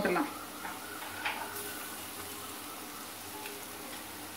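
Sliced onions frying in oil in a pan, a faint steady sizzle, as a ground garlic and chilli spice mix is tipped in from a mixer jar. There is a brief tap about a second in.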